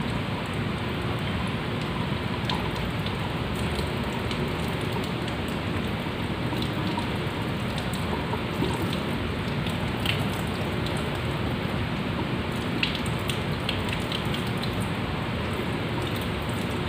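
Steady hiss of water, with a few light clicks and drips scattered through it.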